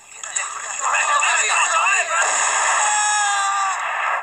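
A crowd of men shouting over a dense, continuous barrage of shotgun fire. It builds in the first second and stays loud throughout.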